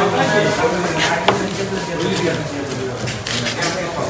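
A large knife cutting through a black pomfret on a cutting board, with a few sharp knocks of the blade, about a second in and again after three seconds.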